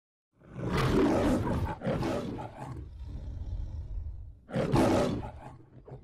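Lion roaring in the MGM studio logo: a long roar starting about half a second in, a shorter roar, a lower rumbling growl, then a second strong roar near the end that fades away.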